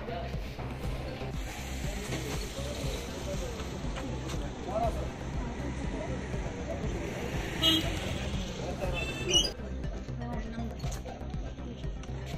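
Indistinct murmur of voices over a steady low hum, with a vehicle horn sounding briefly twice a couple of seconds apart, near the end.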